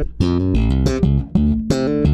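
Electric bass in its active mode, played fingerstyle through an Aguilar TLC Compressor pedal into an amp: a quick line of plucked notes, several a second, showing how the compressor threshold is reached with the hotter active signal.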